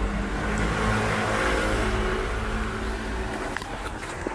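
A motor vehicle passing close by on a street, its engine and road noise swelling about a second in and fading toward the end.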